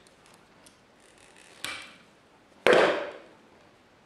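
Two sharp snaps of hand pliers cutting electrical wire at a wall socket box, about a second apart, the second louder with a short ring-out.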